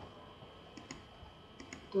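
A few faint clicks of a computer mouse: a single click, then a quick cluster near the end.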